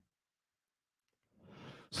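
Near silence, then a short breath drawn in near the end, just before speech resumes.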